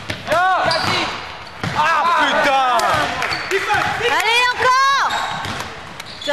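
Basketball shoes squeaking on a wooden gym floor: clusters of short, sharp squeaks that swoop up and down in pitch, about half a second in, around two seconds and again near five seconds, with the ball bouncing on the floor.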